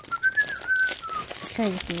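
A person whistling a short tune of about half a dozen notes, stopping about a second in, while plastic mailer packaging crinkles faintly. A voice starts near the end.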